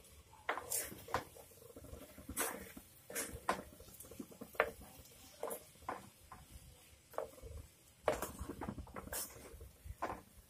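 Wooden spoon scraping and stirring a dry coconut-and-squid stir-fry around a clay pot: irregular scratchy strokes, with a denser run about eight seconds in.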